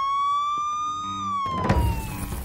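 Police siren wailing, its pitch climbing slowly for about a second and then falling away. Near the end a loud low hit with a rush of noise comes in over it.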